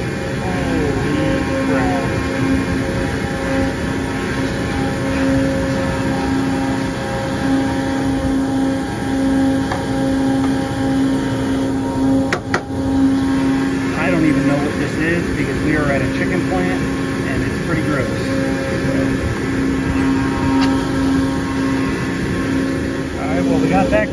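Steady drone of running machinery: a low hum with a higher tone above it, dipping briefly with a sharp click about halfway through. Under it, light scraping as a screwdriver digs caked sludge out of a condensate drain pan.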